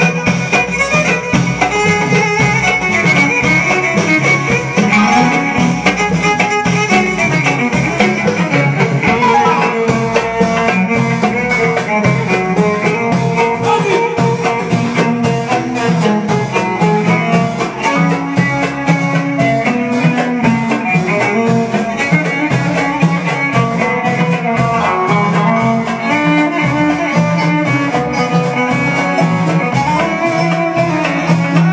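A Moroccan baldi folk band playing: amplified violin, keyboard, drum kit and frame drum, with the drums keeping a steady, even beat.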